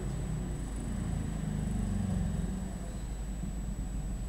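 A motor vehicle passing by, its engine hum and low rumble swelling to a peak about two seconds in, then fading.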